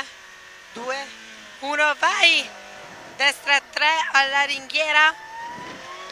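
Short spoken phrases inside a Peugeot 106 N1 rally car's cabin, with the engine quiet in the background. Near the end a thin tone rises slowly in pitch.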